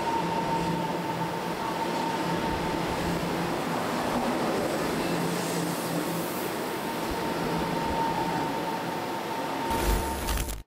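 Electric commuter train moving alongside a station platform: a steady rumble and rush of noise with a faint constant high tone over it. Near the end it is cut off by a short burst of TV-static noise.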